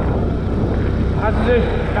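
Steady low rumble of wind and motorcycle running along a road, heard from the rider's position, with a man's voice speaking over it about a second in.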